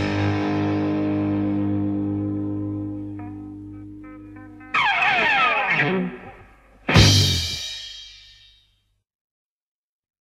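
A rock band's final held chord on distorted electric guitar ringing and fading, with a few picked notes over it. About five seconds in comes a loud guitar slide falling in pitch, then a last struck chord near the end that rings and dies away: the song ending.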